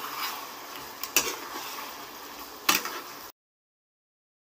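Metal spatula stirring thick, creamy gravy in a non-stick pan, with two sharp knocks of the spatula against the pan, the second near three seconds in; the sound cuts off suddenly just after.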